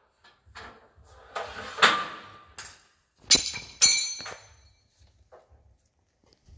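Metal knocking and clinking as a crewman works by hand on an RBS-15 missile and its loading cart under a fighter's wing pylon: about five separate knocks, the loudest about two seconds in, and one a little after three and a half seconds that rings on briefly.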